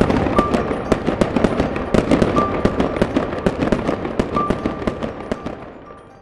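Fireworks crackling and popping in a dense, rapid stream that fades away steadily, over music with a short high chime note repeating about every two seconds.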